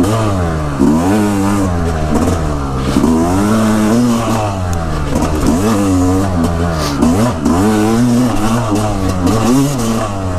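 Yamaha dirt bike engine revving up and down as it is ridden along a trail, its pitch rising and falling about once a second with throttle changes.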